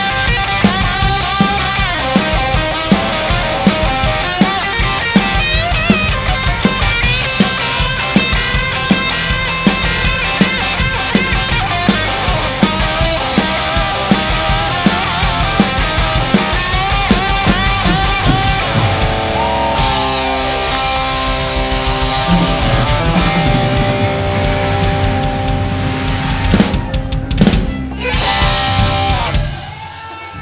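Live hard-rock band with electric guitars, keytar and drum kit, playing the ending of a song. A steady drum beat drives it for most of the time; then the beat drops out under long held chords, and a few final crashing hits close the song near the end.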